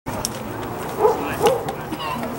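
Voices of spectators with a dog barking twice, about a second in and again half a second later.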